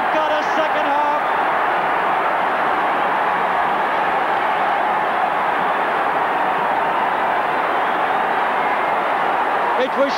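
Large stadium crowd cheering a goal, a loud, steady roar with a few pitched shouts in the first second, heard on an old television broadcast recording.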